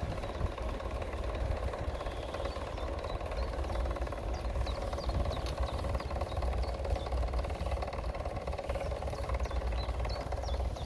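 Steady rumble and hum of travelling fast along an asphalt path, with wind buffeting the microphone. Short high chirps come through in the middle and again near the end.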